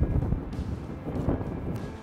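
Wind rumbling on the microphone, a low, noisy buffeting that is loudest at the start and eases off.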